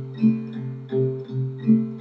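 Acoustic guitar playing alone between sung lines: a steady rhythmic accompaniment, about three notes a second over ringing low notes.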